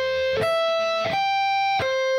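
Electric guitar, a Music Man Majesty, playing an A minor 7 arpeggio very slowly, one separated note at a time. Each note is held a little under a second, the notes step up in pitch, and near the end they turn back down. The fretting fingers lift off after each note so that the notes don't ring into one another.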